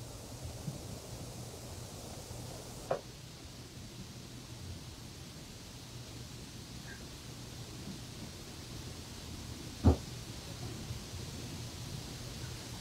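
Steady low hum with two brief knocks: a light one about three seconds in and a much louder one near the end.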